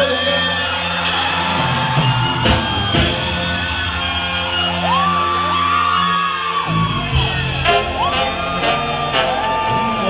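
Sinaloan banda brass band playing live: trumpets and trombones holding long notes over a sustained tuba bass line and drum hits, with whoops over the music.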